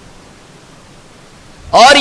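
Faint, steady hiss of background noise during a pause in a man's speech; he starts talking again near the end.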